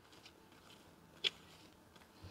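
A folded banana leaf pressed and smoothed over sticky rice cake, giving faint soft rubbing and one short, louder brush a little after a second in.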